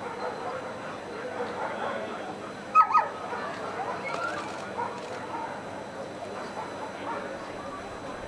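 A German Shepherd gives two sharp barks in quick succession about three seconds in, over a steady background of distant voices.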